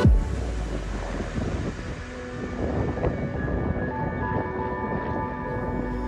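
Helicopter flying overhead: a steady rough rotor-and-engine noise mixed with wind on the microphone. Soft sustained music tones fade in about halfway through.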